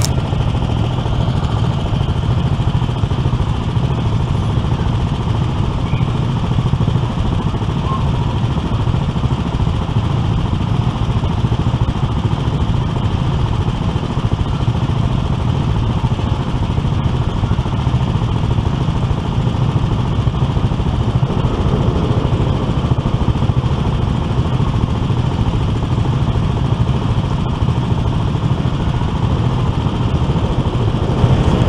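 Small gasoline go-kart engines idling steadily, heard close up from aboard a kart.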